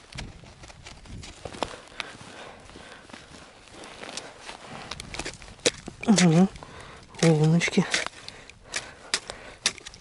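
Rustling and scattered small clicks of fishing line being hand-pulled up through an ice hole from a tip-up. A man's voice gives two short hums about six and seven seconds in.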